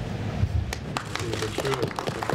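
Voices talking in a room, with a few scattered hand claps from under a second in, the first of a round of applause.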